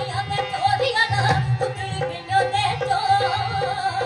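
A woman singing a Punjabi folk song (lok geet) in a high, wavering voice over a steady rhythmic accompaniment of about three to four beats a second.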